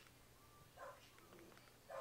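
Near silence: room tone with two faint, short sounds, about a second in and near the end.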